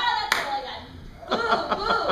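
A woman speaking, with one sharp clack shortly after the start.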